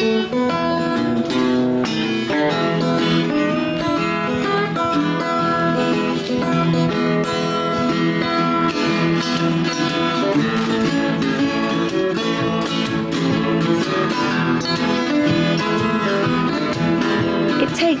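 Several acoustic guitars played together in an instrumental tune, plucked notes ringing continuously.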